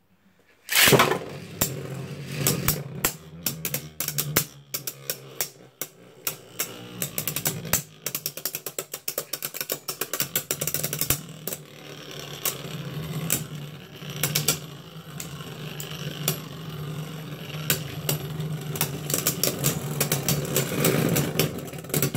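Two Beyblade Burst spinning tops launched into a clear plastic stadium about a second in, then spinning with a steady whir and a fast run of clicks as they collide and scrape against each other and the stadium floor.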